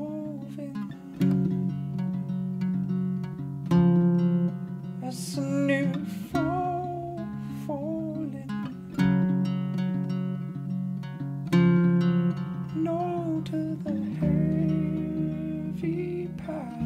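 Acoustic guitar fingerpicked and strummed, with a full chord struck about every two and a half seconds, and a man's voice singing a slow, wavering melody over it.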